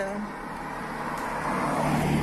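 A car approaching on the road, its engine and tyre noise growing steadily louder.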